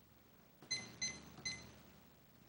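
Three short, light metallic clinks, each ringing briefly, a little under half a second apart.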